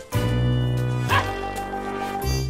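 Background music with a dog giving one short bark about a second in.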